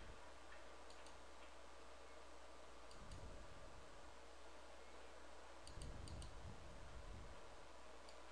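Faint computer mouse clicks: a single click about a second in, another near three seconds, then a quick run of about four clicks near the middle, with soft low thuds and a steady low hum under them.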